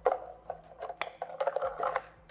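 Scissors cutting through a thin plastic drinks bottle: a run of sharp snips and crackling plastic, with the strongest snaps at the start and about a second in.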